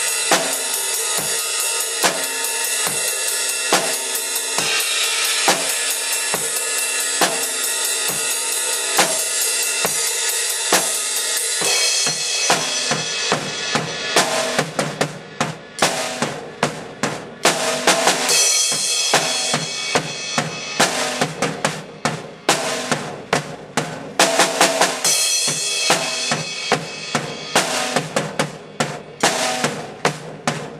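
Rock drum kit played hard: kick, snare and cymbals. For about the first twelve seconds the cymbals wash continuously over a steady beat, then the playing turns to sparser, separate hits with short gaps between them.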